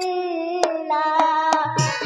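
A girl's voice singing a held note in stage music, cut by three sharp hand-claps. Near the end, drums enter with a steady beat.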